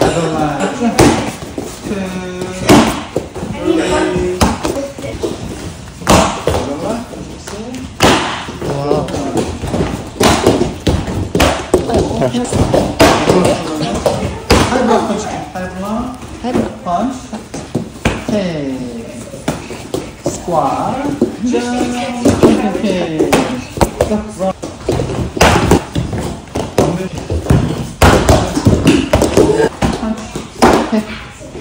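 A handheld taekwondo kick paddle being struck by bare-foot kicks: sharp slaps repeated every second or two, with voices throughout.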